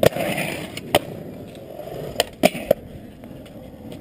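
Skateboard wheels rolling on concrete, with a short scraping grind of the trucks along a concrete ledge at the start. Several sharp clacks of the board hitting and landing come at the start, about a second in, and three in quick succession a little past two seconds.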